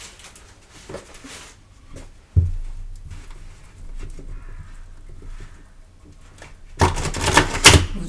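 Tarot cards handled on a tabletop: light taps and slides, a single soft knock a little over two seconds in, and near the end about a second of loud, dense rustling and clicking of cards.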